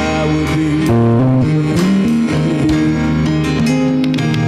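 Live church band playing a guitar-led instrumental passage, with electric and acoustic guitars, bass and drums, and no singing.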